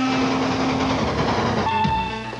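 Steam locomotive sound: a loud rush of escaping steam with a steady low whistle tone for about the first second, the hiss carrying on until music comes in near the end.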